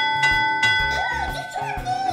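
A service bell's ding ringing and fading out over about a second and a half, over background music with a steady beat.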